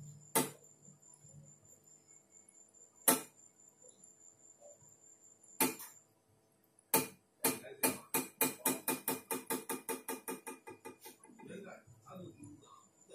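Sharp taps on stage equipment: four single taps a couple of seconds apart, then a quick run of about four taps a second that grows fainter, over a faint sustained ringing tone.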